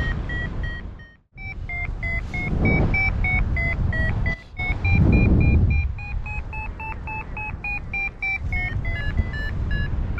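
Paragliding variometer beeping in a climb: short beeps about three a second, their pitch stepping higher through the middle and dropping back a little near the end. Wind rushes over the microphone underneath, swelling twice, and the sound drops out briefly about a second in.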